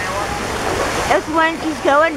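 Steady rush of running water, with a voice calling out in the second half.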